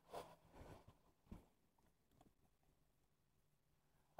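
Near silence, with a few faint short ticks in the first second and a half.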